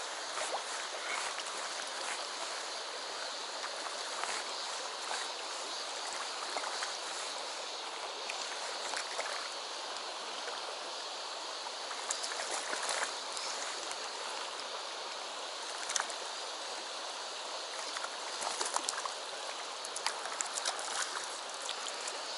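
Shallow mountain river rushing steadily over stones, heard from within the current. A few brief, sharper sounds stand out over it, most of them in the second half.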